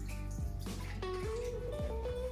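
Background music with held notes, over faint water draining and dripping from washed lettuce in a plastic colander into a kitchen sink, with a few light knocks.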